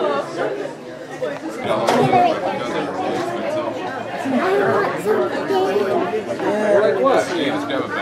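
Chatter of several people talking at once, with no single clear voice.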